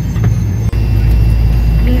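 Turboprop airliner's engines running on the ground, heard inside the cabin as a loud, steady low hum and propeller drone. The sound drops out for an instant a little under a second in, then the drone carries on.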